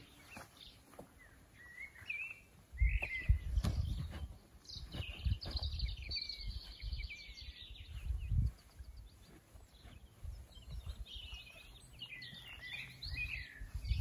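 Songbirds chirping and trilling in several bursts, over low thumps and rustling from someone walking across grass and moving a rucksack.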